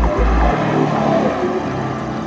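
Chevrolet Corvette C8's V8 accelerating as the car drives past, loudest about half a second to a second and a half in.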